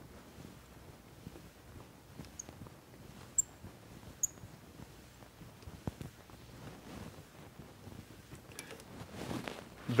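Faint scattered clicks and light metallic taps as a lathe compound rest is tapped to adjust its angle while its feed handle is turned, with two sharper small clicks a little after three and four seconds in.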